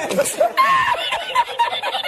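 A man laughing hard, his laugh breaking into quick repeated bursts.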